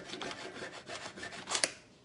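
Table knife and fork sawing and scraping against a disposable aluminium foil tray while cutting food, in quick repeated rasping strokes. The loudest scrape comes about one and a half seconds in, and the cutting stops just before the end.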